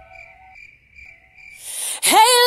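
Cricket chirping sound effect used for an awkward silence: short, evenly repeated chirps, several a second, over a faint wavering held tone. A rising hiss comes in near the end.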